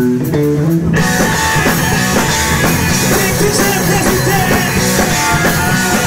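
Live rock band playing loudly: a guitar and bass riff alone at first, then about a second in the drums and cymbals come in and the full band plays on.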